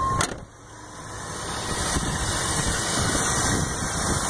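A steady warning chime cuts off with a sharp knock just after the start, like a car door shutting. Then the 1985 Buick LeSabre's 307 Oldsmobile V8 is idling steadily, growing louder toward the open engine bay.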